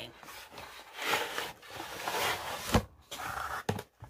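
A wooden cutting board with a glass top sliding out of its snug cardboard box: a rustling scrape of wood and glass against cardboard for about two seconds, then a single knock as it comes free, followed by a couple of lighter clicks.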